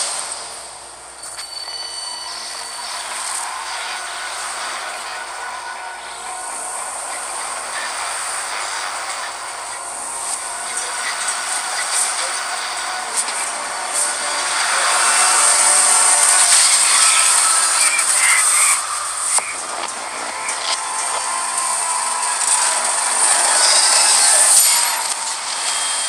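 A long metallic screech and grinding from a tall steel lattice tower straining, mixed with a rushing noise. It swells gradually louder, eases, swells again and then cuts off.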